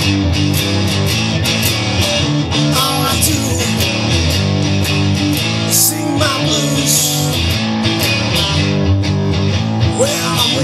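Instrumental passage of a bluesy rock song: guitars playing over bass with a steady beat, and a few short bent notes about three and six seconds in.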